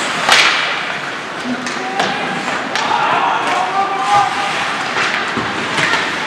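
Live ice hockey play in a rink: one loud sharp knock of puck and stick about a third of a second in, then lighter clacks of sticks and puck over the steady scrape of skates on the ice, with players' voices calling out in the middle.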